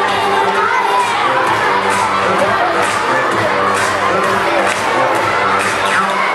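A large crowd of schoolchildren shouting and cheering loudly and continuously over dance-pop music.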